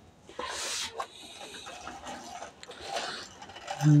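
Plastic toy dump truck being handled and turned around on a bedspread: a short rustling burst about half a second in, then scattered light plastic clicks and rattles.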